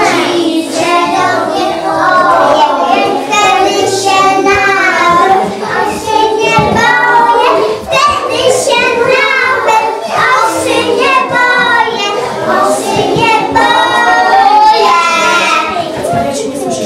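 A group of young preschool children singing a song together.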